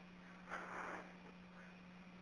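Quiet telephone line with a steady low hum, and one faint short sound about half a second in.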